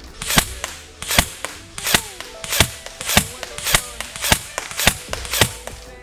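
Battery-powered M4-style airsoft rifle firing single shots in semi-auto, about nine sharp cracks spaced roughly 0.6 s apart.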